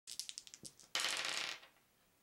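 Plastic polyhedral dice rolled onto a wooden table: a quick run of sharp clicks as they bounce, then about half a second of dense clattering that dies away.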